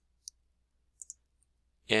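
Computer mouse clicking: a single click, then two quick clicks about a second in, as a PowerPoint slideshow is started.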